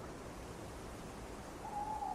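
Steady underwater hiss picked up by a camera in its housing. Near the end, one steady hooting tone begins, sliding slightly down in pitch.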